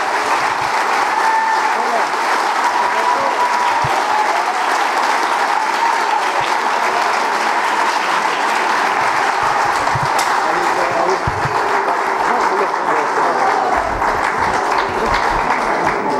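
A crowd applauding steadily, with voices calling out through the clapping.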